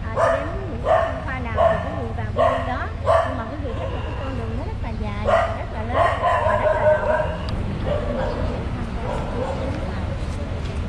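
A dog barking repeatedly: a quick run of about five barks roughly 0.7 s apart, then a few more about halfway through.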